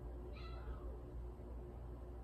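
Harbor Breeze Bella Vista 44-inch ceiling fan running with a steady low hum and a faint tone that pulses several times a second. About half a second in there is one short, high, wavering cry.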